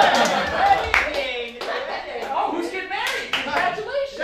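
Audience clapping, with several voices talking and calling out over it.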